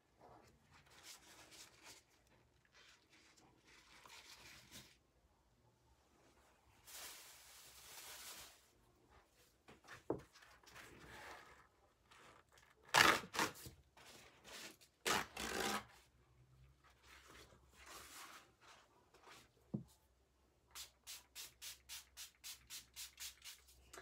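Paper towels rubbed, rustled and handled in irregular spurts, with a few louder crumpling bursts partway through. Near the end, a small hand spray bottle is squirted rapidly, about four squirts a second, to dampen the paper towels.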